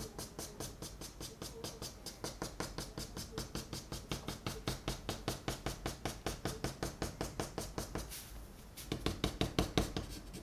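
Chalk pastel stick tapped rapidly against paper in a steady run of light knocks, about seven a second, with a brief pause near the end before the tapping resumes.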